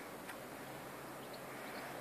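Quiet outdoor background: a faint steady hiss with one faint tick about a third of a second in, and no distinct sound source.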